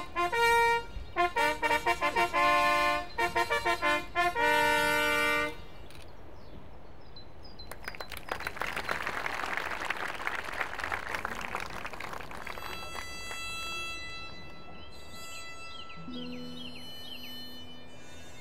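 Herald's fanfare trumpet playing a ceremonial fanfare: a run of short brass notes ending on a longer held note about five seconds in. After a quieter gap comes a few seconds of rushing noise, then soft sustained music with some sliding notes.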